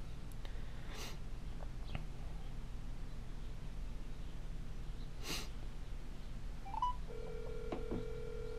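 Samsung Galaxy Gear smartwatch's speaker playing a call's ringback tone while the call dials: low background hum at first, then about seven seconds in a steady ring tone starts, quiet.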